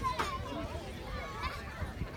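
Distant, unintelligible voices of young players calling out and chattering, with a low rumbling noise underneath. A single short, sharp click comes just after the start.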